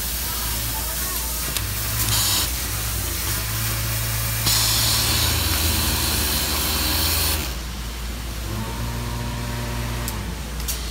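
Cylinder-arm overlock sewing machine with an AP26S automatic backlatch system running over a steady factory hum. A louder stretch of sewing with a strong hiss begins about halfway through and cuts off sharply near three-quarters of the way, after a brief hiss at about two seconds.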